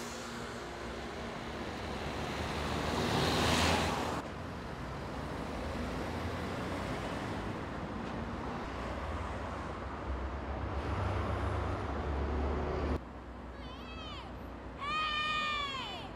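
Outdoor background noise across several cut shots: a swell in the first few seconds as something passes, then a steady low rumble. Near the end come a few short high calls that rise and fall in pitch.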